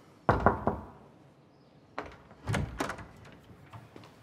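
Knuckles knocking on a closed door: a quick run of about three knocks just after the start, then a few more thumps about two seconds in.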